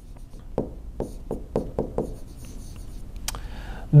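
Pen writing by hand on an interactive whiteboard screen: a run of light taps and rubbing strokes, a few per second, as letters are formed, with one sharper click near the end.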